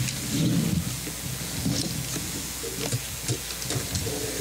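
Room noise in a meeting hall: a low murmur of indistinct voices in the first second, then scattered small clicks and knocks of people shifting and handling papers, over a steady hiss and hum.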